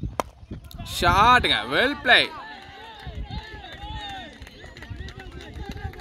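A cricket bat striking a leather ball with one sharp crack just after the start, then about a second later loud shouts from players and onlookers, followed by several voices calling out at once as the shot runs away for a boundary.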